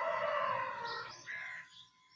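A rooster crowing.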